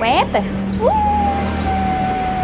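Siberian husky vocalizing: a couple of short yips at the start, then, about a second in, a long drawn-out howl that rises and then holds an almost steady pitch.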